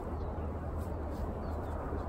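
Steady low rumble of outdoor ambience, mostly wind on the microphone, with no distinct event standing out.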